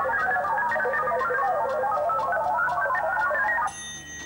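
Game-show category-picker sound effect: a fast run of electronic beeps hopping up and down in pitch while the board cycles through its categories. The beeps stop abruptly near the end as the board settles on a category.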